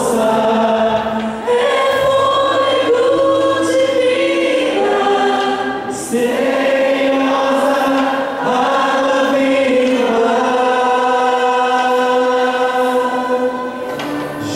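A group of voices singing a Christian worship song in long held notes, with live band accompaniment.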